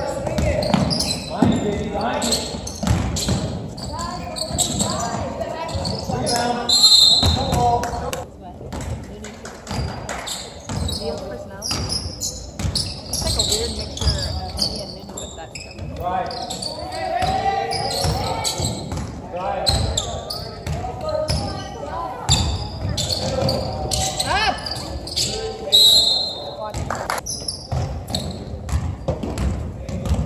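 A basketball bouncing on a hardwood gym floor as it is dribbled during a game. Voices from players and spectators echo in the hall.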